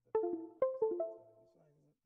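A short jingle of about five quick plucked-sounding notes at different pitches, each ringing briefly and dying away within the first second and a half.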